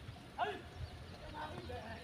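Buffalo hooves thudding irregularly on the ground, with men's voices calling out about half a second in and again near the middle.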